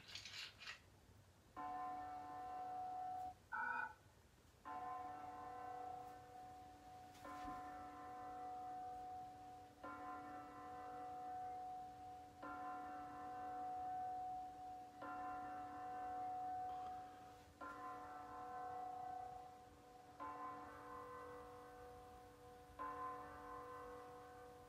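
Recorded bell chimes played back fairly quietly: nine strikes about two and a half seconds apart, each ringing on until the next, with a brief higher tone near the second strike.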